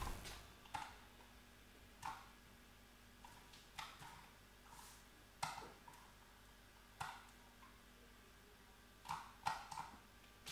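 Faint, scattered clicks of a computer mouse and keyboard being operated: about nine sharp clicks at irregular intervals, three in quick succession near the end, over quiet room tone.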